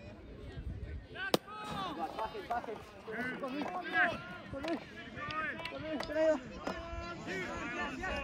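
A single sharp crack of a wooden shinty stick (caman) striking the ball about a second in, followed by repeated young players' shouts and calls across the pitch.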